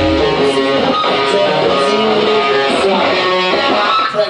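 A lone electric guitar keeps playing and ringing out after the drums and bass drop away right at the start, as a live rock song comes to its end.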